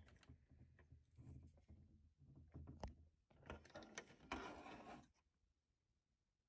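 Near silence with a few faint clicks and a brief soft rustle of hands handling cables and a power plug, then quiet near the end.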